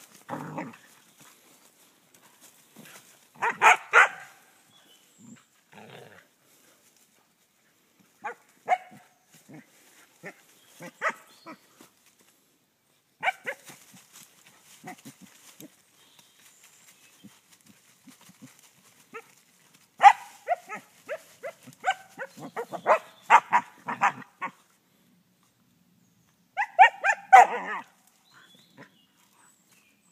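Dog play-barking while it plays with a stick in fallen leaves, in bursts of several barks with pauses between; the longest run of barks comes about two-thirds of the way through.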